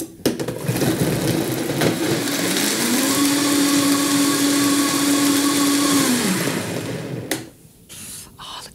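Vitamix blender blending a smoothie of frozen blueberries, banana and hemp milk. The motor's whine climbs in pitch as it speeds up a couple of seconds in, holds steady, then drops and stops near the end.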